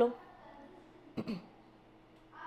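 A woman briefly clears her throat once, about a second in, amid quiet room tone; the last syllable of her speech trails off at the very start.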